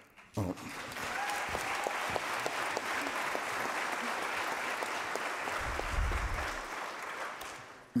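Audience applauding, starting about half a second in after a brief spoken "Oh", holding steady and fading out near the end.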